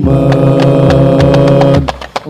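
Male vocal group chanting an Arabic sholawat verse in unison, holding one long note over quick percussive taps. The note fades out near the end.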